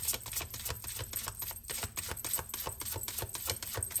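A deck of tarot cards being shuffled by hand: a fast, uneven run of papery clicks, several a second.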